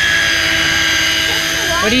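Daiwa Tanacom 1000 electric reel's motor whining steadily as it winds line in from a deep drop with a fish on.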